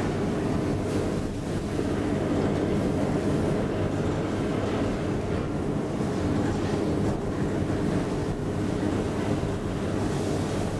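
1985 KONE inclined elevator cab travelling up its incline, heard from inside the cab: a steady, even rumble and hum of the moving cab and its drive.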